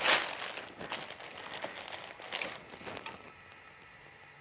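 Clear plastic bag crinkling in irregular bursts as it is handled and smoothed flat. The rustling thins out and dies away near the end.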